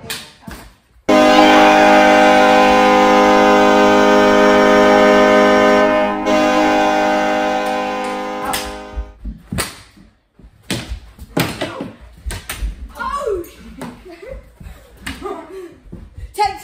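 Hockey goal horn sounding one steady, deep chord that starts abruptly about a second in, holds for several seconds and fades out, marking a goal. After it, sharp clacks of plastic sticks and a ball as play resumes.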